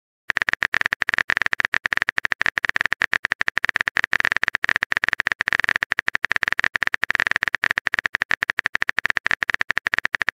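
Keyboard-typing sound effect: a fast, dense run of small clicks, like rapid typing on a keyboard, that starts a moment in and keeps going without a break.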